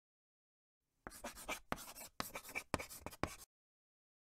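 Chalk writing on a chalkboard: about five quick scratching strokes with short gaps, starting about a second in.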